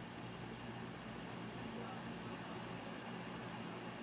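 Faint, steady whir of a Lenovo Yoga 720 laptop's cooling fans with its Nvidia GTX 1050 under a full FurMark stress load. The fans stay quiet despite the load, with a little low hum under the even hiss.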